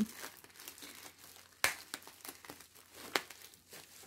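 Plastic bag crinkling as hands work at its knot, with two sharper crackles, about a second and a half in and again about three seconds in.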